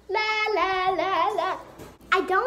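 A young girl singing a short wordless tune in held, stepping notes for about a second and a half, then trailing off.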